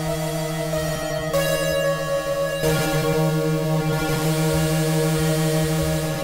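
Waldorf Blofeld wavetable synthesizer holding a steady droning chord with a strong low note, its timbre changing abruptly about a second in and again about three seconds in.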